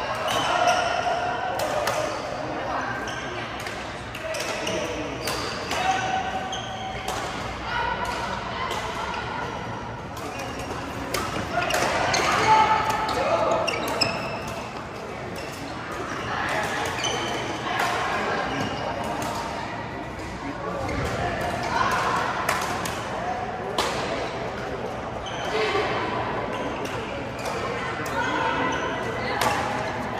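Indistinct chatter of several people echoing around a large sports hall, cut through by sharp, irregular strikes of badminton rackets hitting shuttlecocks on the courts.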